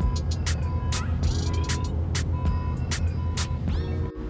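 Coach bus engine idling as a steady low hum, with scattered sharp clicks and short high beeps repeating every second or so.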